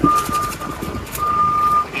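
Electronic beeper sounding a steady high tone in short pulses, each about half a second long, repeating a little over once a second.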